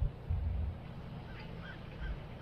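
Low, uneven rumble of a distant engine, taken for an approaching tractor or riding lawn mower, louder in the first moments and then steady. A few faint short calls sound over it about halfway through.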